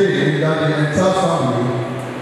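A man's voice over a microphone in a drawn-out, chant-like cadence, holding long notes that step from one pitch to the next.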